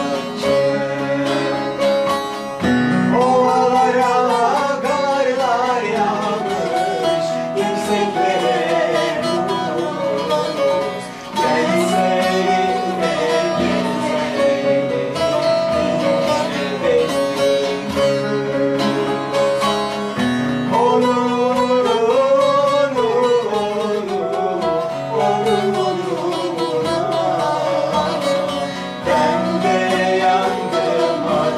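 Bağlama (long-necked Turkish lute) and piano playing a Turkish folk tune together, the bağlama's plucked melody over sustained piano chords.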